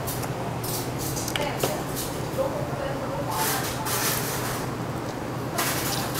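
Close-miked breathy exhales and eating noises, several short hissy puffs, over a steady low hum of restaurant machinery.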